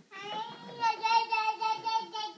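A toddler's long, high sung vocal sound, held on one slightly wavering pitch and getting louder about a second in.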